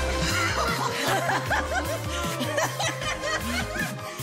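A man chuckling and snickering, breaking up with laughter in the middle of a take, over background music with a steady repeating bass line.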